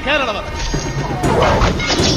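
A man's loud shout, then battle sound effects: a run of whacks and crashes of hand-to-hand combat over dramatic film music.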